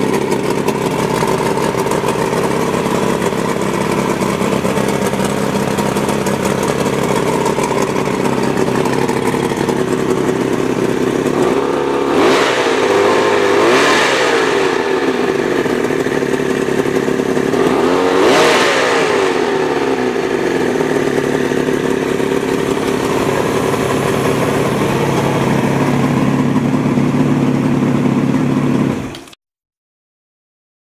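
Outboard motor running on a stand with its propeller spinning out of the water. It is revved up and back down twice in the middle, and the sound cuts off suddenly near the end.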